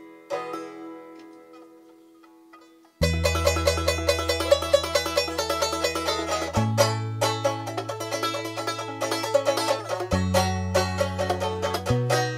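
Banjo picking a quiet intro, then about three seconds in a much louder full accompaniment starts: banjo with rack harmonica over a steady low bass line that changes note every few seconds.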